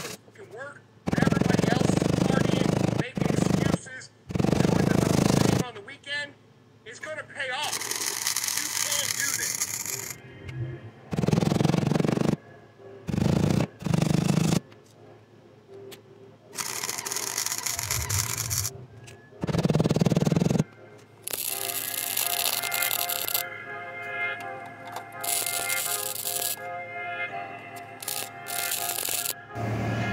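Wire-feed welder tack-welding a patch panel onto a car's rocker panel: several crackling welds of a second or two each, with pauses between them. Background music with singing plays over the welds and fills the last third.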